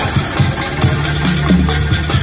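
Street band's improvised drums, plastic pipes and buckets, playing a fast, driving dance beat over a deep bass line, with a held bass note in the second half.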